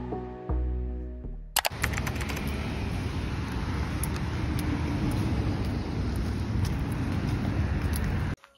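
Lo-fi background music for about the first second and a half, then it cuts off and a steady rushing outdoor street noise takes over, with scattered light clicks.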